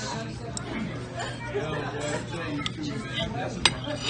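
Diner background chatter, with a fork and knife clinking against china plates three times, the sharpest clink near the end.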